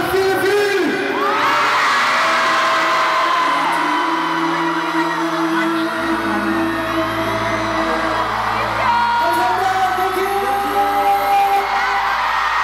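Slow pop ballad's closing instrumental, held chords with a low bass note coming in about halfway, played over an arena crowd of fans screaming and whooping.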